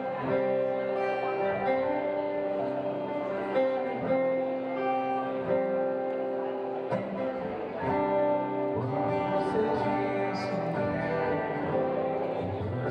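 A small live band playing, led by strummed acoustic guitar, with held melody notes that change about every second.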